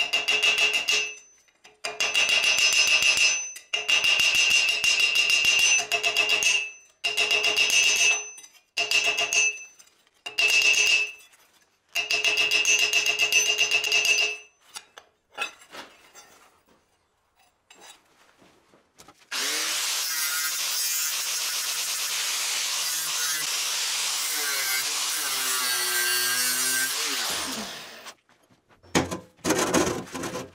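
A power tool working steel: about seven short runs of a second or two each, then after a pause one steady run of about eight seconds whose pitch wavers, and a few light clicks near the end.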